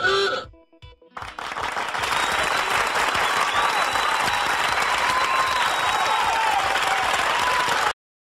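Crowd applause with a few cheers, building from about a second in and holding steady until it cuts off at the end. Just before it, a short loud vocal sound and the last notes of a light background tune with a steady beat.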